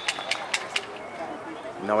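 Faint outdoor ambience at an American football game: distant voices and a few sharp clicks within the first second, then a man's commentary starts near the end.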